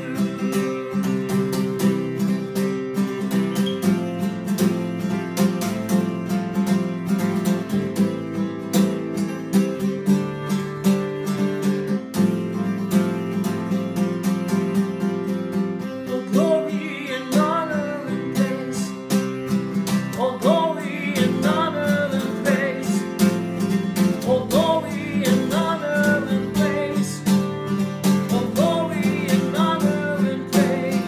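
Steel-string acoustic guitar strummed in a steady rhythm of chords, with a man's singing voice coming in about halfway through.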